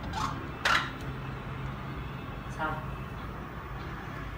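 The plastic screw cap of a Bosch dishwasher's salt reservoir being closed by hand in the bottom of the tub: a brief scrape about two-thirds of a second in, then a faint click. A steady low hum runs underneath.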